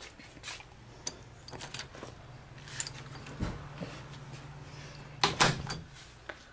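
A door being opened to let a cat outside: scattered small clicks and knocks over a low steady hum, with the loudest knocks coming close together near the end.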